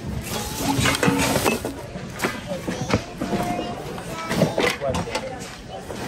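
Hands rummaging through a bin of mixed goods: plastic bags rustling and objects knocking and clattering against each other in a run of short sharp sounds, with voices in the background.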